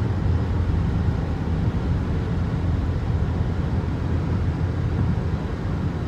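Steady low rumble of a moving car heard from inside the cabin: road and engine noise while driving at an even speed.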